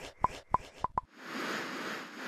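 Logo-animation sound effects: about five quick, short pops in the first second, then a swelling whoosh of noise.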